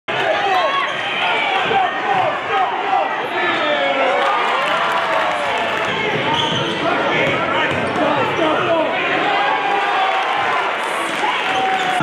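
Basketball game sound in a gym: the ball bouncing on the hardwood floor against a steady din of many overlapping voices from the crowd and players.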